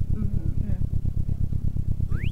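Digitally synthesized car engine rumble from a spatial-audio device: a low, steady rumble that pulses several times a second, placed slightly to the listener's right.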